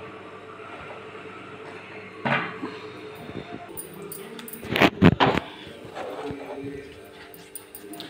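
Quiet kitchen handling noise while a pan of mango pulp is stirred, with a short cluster of sharp clicks and knocks about five seconds in.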